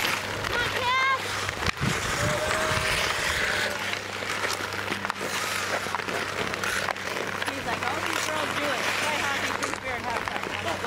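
Outdoor ice hockey game: distant shouts and calls from players and spectators over the constant scrape of skate blades on the ice, with a few sharp stick clacks.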